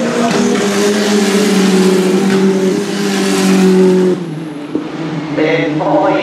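W Series Tatuus single-seater race cars with turbocharged four-cylinder engines running at high revs past the grandstand. The steady engine note builds, then cuts off abruptly about four seconds in. Spectators' voices follow near the end.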